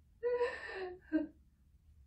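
A person's short, breathy voiced exhale of under a second, gasp-like, with a brief second sound just after it.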